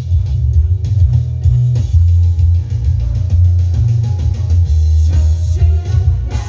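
Live band playing an instrumental passage with no singing: a loud, prominent bass line changing notes with guitar and drums.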